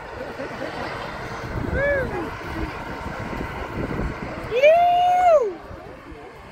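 A person whooping, a short call about two seconds in and a long held one near the end, which is the loudest sound, over a steady low rumble of engines.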